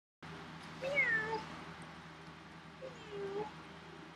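Tabby cat meowing twice, once about a second in and again about three seconds in, each call falling in pitch; the first is the louder.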